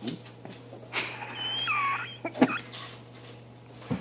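A toddler's short high-pitched squeal that falls in pitch, about a second in, amid a few light knocks and thumps from climbing on a windowsill.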